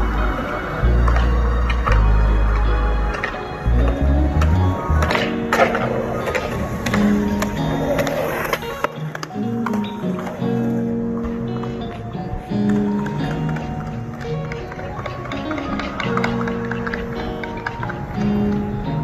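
Background music with a beat and held notes, the heavy bass of the first few seconds thinning out about five seconds in.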